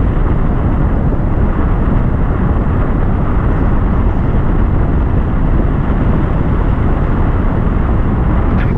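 Wind from a paraglider's flight speed buffeting the action camera's microphone: a loud, steady rush with a heavy low rumble.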